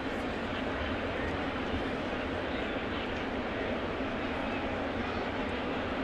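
Steady murmur of a ballpark crowd, heard through the radio broadcast's crowd microphones.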